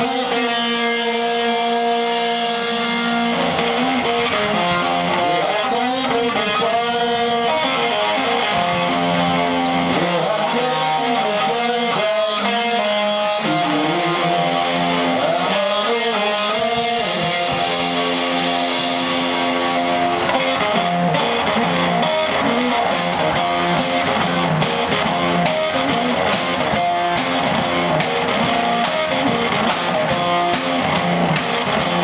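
Live electric guitar and drum kit playing an instrumental stretch of a hill-country blues song, with no singing: the guitar works a repeating riff of held notes. The drums grow busier in the second half, with dense cymbal and drum strikes.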